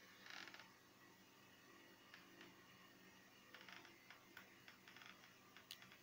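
Near silence: room tone with a few faint clicks and light rustles of handling, the most noticeable one just after the start.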